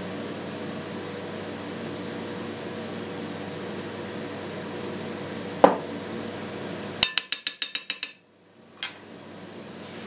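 Steady low room hum, then a single sharp clink a little past halfway as the glass oil bottle is set down. About two seconds later a metal spoon clinks rapidly against a glass mixing bowl, about a dozen quick clinks in a second, as oil is stirred into dough.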